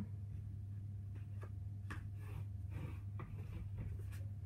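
Faint rustles and light taps of cardstock being handled and laid down on a work surface, over a steady low hum.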